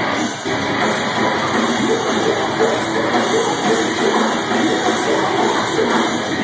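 Live metalcore band playing loudly through a club PA: distorted electric guitars, bass and drums in a dense, continuous wall of sound.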